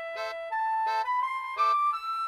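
Polka tune for a Dutch clog dance (klompendans): a single high melody climbing step by step over short accompanying chords that come about every 0.7 s, light and without bass.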